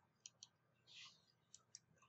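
Faint computer mouse button clicks: two quick pairs of clicks, one pair near the start and one past the middle, with a brief soft hiss about a second in.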